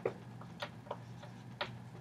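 Dry-erase marker writing a word on a whiteboard: a handful of short, faint, irregular ticks and scratches as each stroke is drawn.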